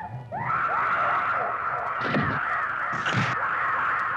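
A woman's long, harsh scream that rises in at the start and then holds high and steady. Two low, dull hits sound beneath it about two and three seconds in.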